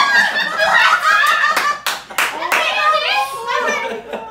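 Several people laughing and exclaiming loudly in high voices, with a few sharp hand claps about two seconds in.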